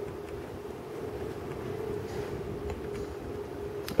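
A steady low hum over faint background noise, unchanging throughout.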